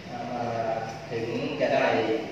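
A man speaking Thai into a handheld microphone, his voice amplified in a large hall.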